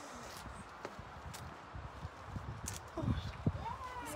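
Soft scuffs and a few sharp taps of a climber's shoes and hands on granite over a low rumble, with a spectator's voice saying "Oh" near the end.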